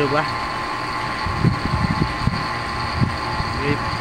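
Refrigeration vacuum pump running with a steady hum, evacuating an air-conditioning system after a leak to pull out the air that got in. A few dull knocks come through near the middle.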